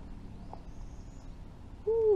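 A single hooting animal call near the end, held briefly and then sliding down in pitch, the loudest sound here. Before it, a faint high thin whistle about halfway through, over a steady low background rumble.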